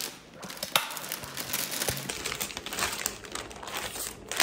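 Plastic bag crinkling and rustling in irregular bursts as gift items are pulled out of it.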